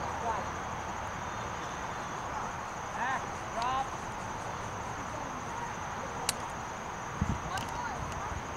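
Open-air sports-field ambience: faint distant voices calling out across a soccer pitch over a steady high-pitched drone, with a sharp click about six seconds in and a dull thump near the end.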